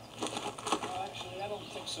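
Faint, indistinct voices of people talking, with a few soft clicks in the first second and a low steady hum underneath.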